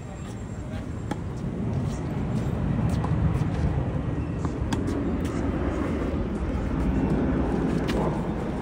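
A low engine rumble that swells over the first three seconds and then holds steady, with scattered faint sharp knocks.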